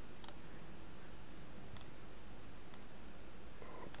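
A few computer mouse clicks, spaced about a second apart, over a steady low background hiss.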